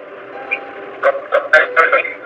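Steady car-cabin hum, then about a second in a woman starts speaking in short phrases over it.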